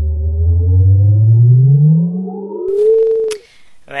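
A cartoon sound effect: one low tone gliding steadily upward in pitch for about three seconds, then a short higher note that rises and falls, ending with a click.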